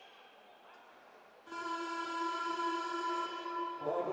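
Ice rink horn sounding one long, loud, steady blast of about two and a half seconds, starting about one and a half seconds in; it marks the end of the game.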